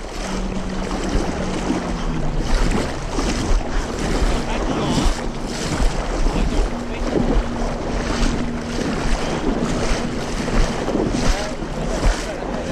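Wind buffeting the microphone and water splashing beside a boat, with a steady low motor hum underneath that rises in pitch for a few seconds around the middle.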